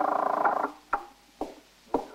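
An electric buzz, like a switchboard or door buzzer, sounding for under a second and cutting off, followed by three light clicks.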